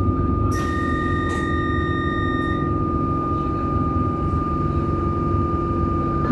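Carriage interior of a stationary Melbourne suburban electric train: a steady low hum with a constant high-pitched tone. About half a second in, a second, higher tone comes in and holds for about two seconds before stopping.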